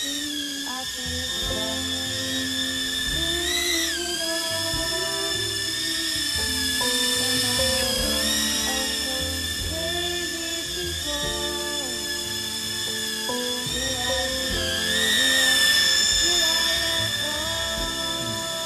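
URANHUB UT10 micro toy drone's propellers whining in flight, the pitch dipping and rising as it manoeuvres, briefly higher about four seconds in and again near the end. Background music plays under it.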